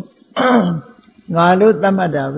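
A man clears his throat once, briefly, about a third of a second in, then goes back to speaking.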